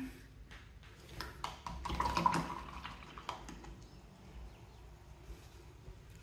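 A paintbrush being rinsed in a cup of water: a few seconds of small splashes and light clicks of the brush against the cup, busiest in the middle.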